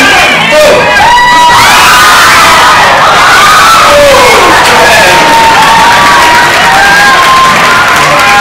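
A crowd of women cheering and shrieking, many high voices overlapping at once without a break, loud throughout.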